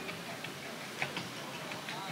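Footsteps on a wooden floor: scattered light clicks and short sneaker squeaks as a person walks about.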